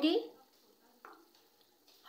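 A silicone spatula stirring masala in a steel pot, faint, with one short soft scrape about a second in.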